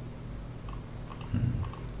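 A handful of light computer clicks, scattered irregularly through the second half, made as palm props are painted onto the terrain.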